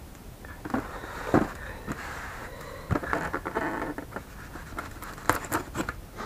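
Hands handling a white packaging box: scattered scrapes, rustles and light clicks, with a quick run of sharper clicks near the end.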